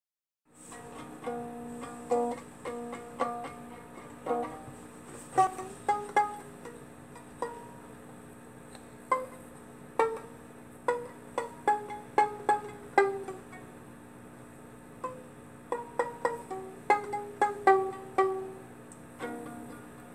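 Violin played pizzicato: a slow run of single plucked notes, each starting sharply and ringing briefly before it fades.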